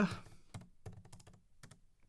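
Computer keyboard being typed on: a quick run of about seven separate keystrokes, a word being typed out.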